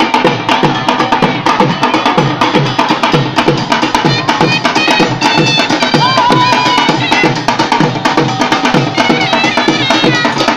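Several dhol barrel drums beaten together in a fast, steady rhythm, with sharp clacking strokes on top of the low beat.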